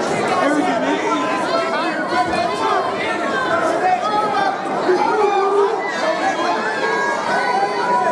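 Crowd of spectators talking and calling out, many voices overlapping.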